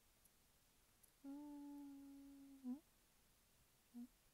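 A woman humming a single steady note with closed lips, a thinking "hmm" lasting about a second and a half that lifts briefly in pitch as it ends; a very short second hum follows near the end.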